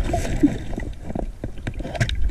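Water gurgling and sloshing around the camera during a dive, over a low rumble, with scattered small clicks and bubbly blips.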